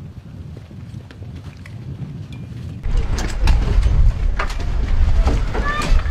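Soldiers boarding an armored vehicle: scattered knocks and clanks of boots, weapons and the vehicle's rear door over a low rumble that grows much louder about three seconds in.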